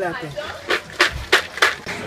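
Four sharp clicks or knocks, roughly a third of a second apart, after a brief word at the start.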